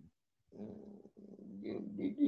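A person's voice, drawn out and hard to make out, starting about half a second in after a brief pause.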